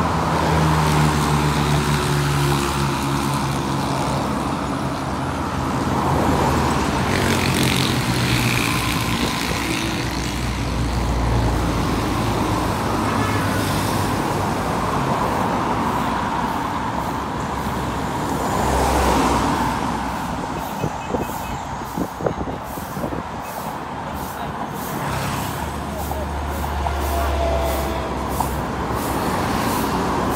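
Busy road traffic passing close by: minibuses and cars driving past in a steady wash of engine and tyre noise. A minibus engine hums loudly as it passes in the first few seconds.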